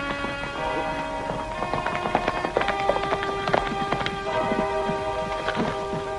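Background score of held, sustained chords, over horses' hooves clopping on a dirt road; the hoofbeats come in about a second and a half in and continue irregularly as the horses pull up.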